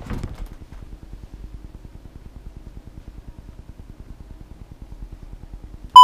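Faint low room noise with a fast, even flutter, then a very short, loud beep-like click at the very end where the video is cut.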